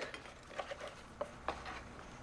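A few faint clicks and taps of tableware at a meal, over quiet room tone.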